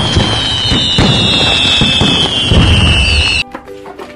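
Fireworks sound effect: crackling bangs under a long, slowly falling whistle. It cuts off suddenly about three and a half seconds in.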